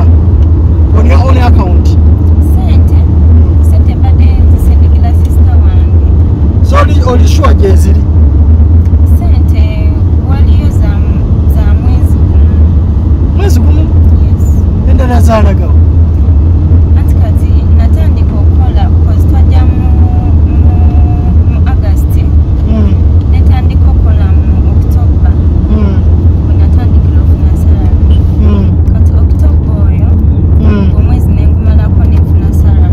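Loud, steady low rumble of a moving car heard from inside its cabin, with faint voices now and then.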